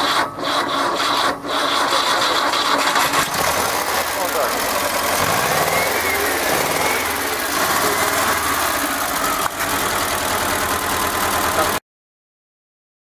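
1975 LuAZ off-roader's air-cooled V4 engine running steadily, heard close up in the open engine bay. A few knocks sound in the first second and a half, and the sound cuts off abruptly just before the end.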